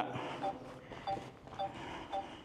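Short electronic warning beeps from a drone remote controller, about two a second, each a brief pair of steady tones.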